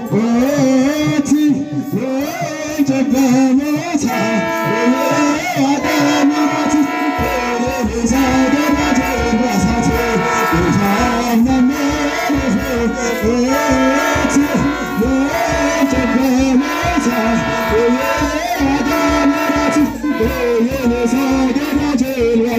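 A group of Ethiopian Orthodox chanters singing a wereb hymn in Afaan Oromo. A low drum beat joins the singing about seven seconds in.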